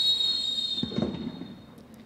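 Referee's whistle blown in one long, steady, high-pitched blast that fades out near the end, signalling the kickoff.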